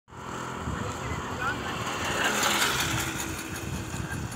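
A large flock of sheep moving along a paved road: a steady shuffle of many hooves on asphalt, with wind rumble on the microphone, swelling about halfway through.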